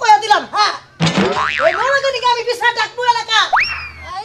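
Women's voices speaking loudly in Bengali, with a cartoon 'boing' sound effect laid over them: a wobbling spring-like tone about a second in, and a sharp upward swoop near the end.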